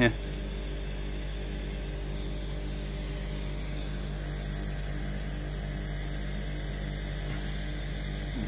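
Ohmasa gas torch flame burning with a steady hiss, over a steady electrical hum with even overtones.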